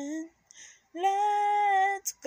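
A woman singing unaccompanied: a held note dies away just after the start, and after a short pause she holds another long, steady note.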